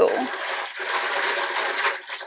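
A hand rummaging through a fabric-lined basket full of small plastic capsules: a dense, continuous rattle and rustle of the capsules knocking together. It eases off near the end.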